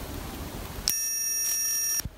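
Meiruby rechargeable electric arc lighter firing its arc: a steady high-pitched whine that starts sharply about a second in and cuts off abruptly about a second later.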